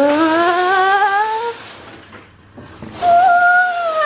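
Two long, wordless playful voice sounds: the first rises in pitch for about a second and a half, and the second, starting about three seconds in, is higher and begins to fall.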